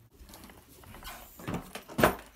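Faint rustling and shuffling of a small child moving about in an open fabric suitcase, with a brief voice-like sound from the child about one and a half seconds in.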